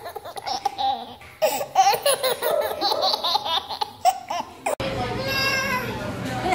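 Baby laughing in quick bursts of belly laughter, with a short pause about a second in before laughing again. Near the end the sound cuts off suddenly to room noise and a voice.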